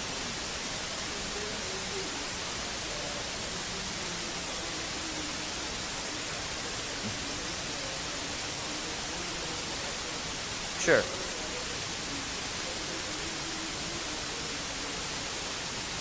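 Faint, distant speech of an audience member asking a question away from the microphone, under a steady recording hiss. A brief sharp sound, falling in pitch, stands out about eleven seconds in.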